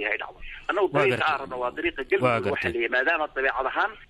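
Speech only: a voice reading news in Somali, with the band-limited sound of a radio broadcast.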